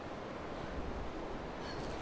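Wind outdoors: a steady rushing noise, with a low rumble of wind buffeting the microphone about a second in.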